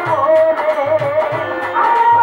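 Live Bengali baul folk music: a woman singing with a bowed violin over a steady hand-drum beat; near the end the violin carries the melody on its own.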